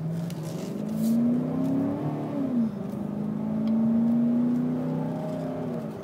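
A 2007 Ford Expedition's 5.4-litre V8 heard from inside the cabin while accelerating. The engine note climbs, drops about two and a half seconds in as the transmission shifts up, then rises again and eases off near the end.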